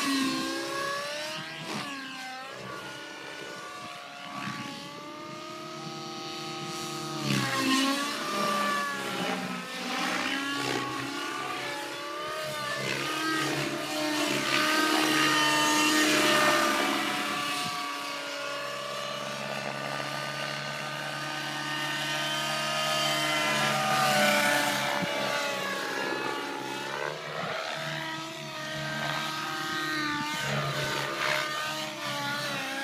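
RJX X50 radio-controlled helicopter's two-stroke glow engine, running on nitro fuel at high revs, with a whine that rises and falls in pitch as the helicopter climbs, dives and turns, growing louder and fainter as it passes.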